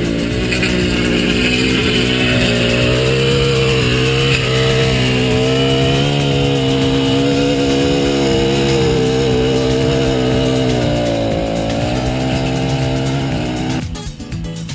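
Small petrol engine of a handheld lawn tool running steadily, its pitch dipping briefly about eleven seconds in and then recovering; the sound stops abruptly at the end.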